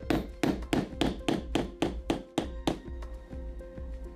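Quick, regular hammer strikes on a metal hand setter, about four a second, setting the fastener that holds the leather buckle strap of a cuff bracelet; the strikes stop a little under three seconds in. Background music plays underneath.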